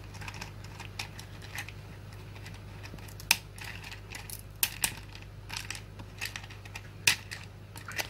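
Thin dry pretzel sticks clicking against a hard plastic lunchbox tray and snapping as they are broken to fit, a run of light irregular taps with a few sharper cracks.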